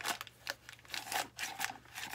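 A crinkling plastic bag rubbed and dabbed around the inside of a cement candle holder to spread paint, in a few irregular rustling strokes.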